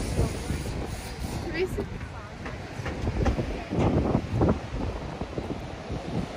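Wind rumbling on the microphone over the wash of surf, with short snatches of nearby people's voices, loudest about four seconds in.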